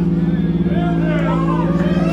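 Electric guitars and bass holding one sustained chord through their amplifiers, with no drum beats. Crowd voices rise over it about halfway through.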